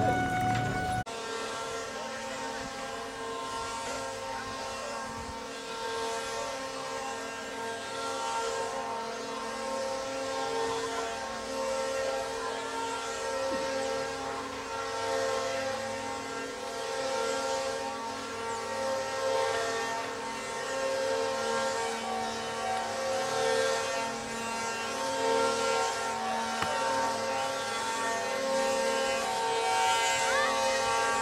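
Wooden axles of several ox carts singing: a sustained, wailing chorus of steady tones that swells and fades every few seconds, beginning at a cut about a second in.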